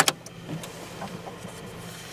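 Ferrari F12tdf switched on, ignition on before the engine starts: a sharp click and a second click right after it, then a steady low electrical hum with a few light ticks as the car's systems power up.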